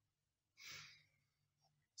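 Near silence, broken just over half a second in by one brief exhaled breath.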